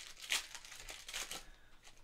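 A foil trading-card pack wrapper being torn open and crinkled by hand: a run of faint crackles, with a sharper tear about a third of a second in.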